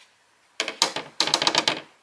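A plastic tray coated in DTF adhesive powder being tilted and handled, giving a rapid rattle of clicks for a little over a second, starting about half a second in.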